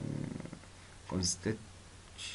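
A narrator's voice: a drawn-out hesitation hum, then a couple of short syllables about a second in.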